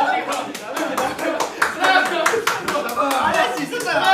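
Rapid hand clapping, several claps a second, mixed with excited laughing and shouting voices.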